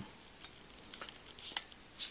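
Quiet room tone with three faint short clicks, about half a second apart.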